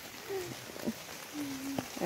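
Light rain falling steadily on garden foliage, with a faint voice murmuring briefly in the background.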